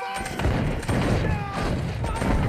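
Battle sound from a war film: a dense, continuous rattle of musket fire and booms, with voices and music faintly over it.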